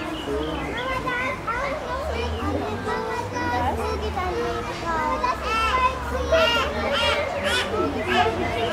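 Many children's voices chattering and calling out at once, some high and excited, over a low steady rumble.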